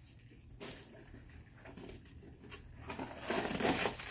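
Paper stuffing rustling and crinkling as it is pulled out of a new handbag, louder near the end.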